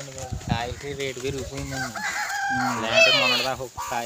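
A rooster crows once in the second half, loudest about three seconds in, over people talking.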